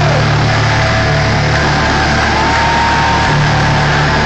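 Loud live hardcore punk music from a band with amplified distorted guitars and bass, with held low notes and a steady high tone in the middle.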